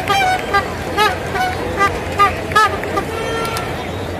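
Baseball stadium crowd: a steady hubbub from the stands with a rhythmic run of short, pitched calls from the fans, about two a second, and a longer held call near the end.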